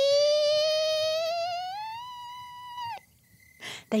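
A woman's voice imitating a creaking door: one long squeaky note that rises slowly in pitch for about two seconds, holds, and breaks off about three seconds in.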